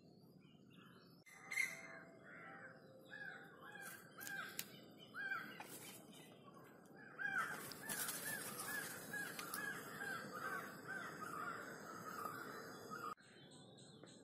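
A bird calling over and over in short, arched notes, the calls coming quicker and closer together in the second half. The sound starts and stops abruptly about a second in and a second before the end.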